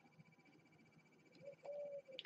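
Near silence while a hobby knife blade cuts through a thin balsa strip, with a few faint short squeaks from the cut near the end.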